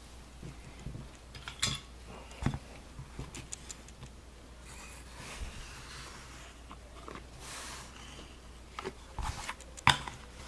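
Light clicks and taps of plastic card holders being handled and set into clear plastic display stands on a tabletop, with a few sharper clicks near the end and soft rustling between them.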